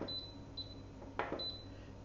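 A few short, faint high-pitched electronic beeps from an Instant Pot's control panel as it is set to sauté, with two soft clicks, one at the start and one about a second in.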